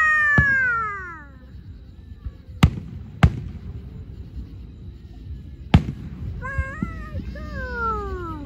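Aerial fireworks bursting with sharp bangs about half a second, two and a half, three and a quarter and nearly six seconds in. Over them a high voice draws out long cries that fall in pitch, one at the start and one near the end.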